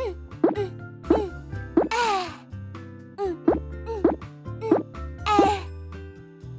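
Cartoon sound effects of a toy mallet tapping a dental implant into the gum: a run of about ten short plop-like blips, each falling in pitch, roughly two a second, with two brief swishes between them, over children's background music.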